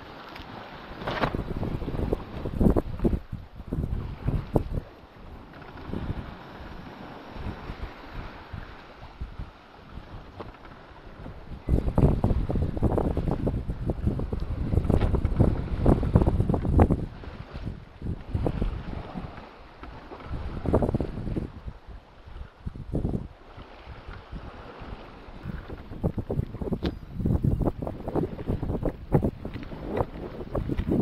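Wind buffeting the microphone in uneven gusts over the rush of sea water past the hull of a small sailing yacht under sail in open water, with the longest, loudest gust in the middle.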